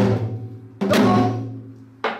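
Janggu (Korean hourglass drum) struck twice, about a second apart, in deong strokes: a sharp stick crack on the high head together with a low booming ring from the bass head, each fading before the next.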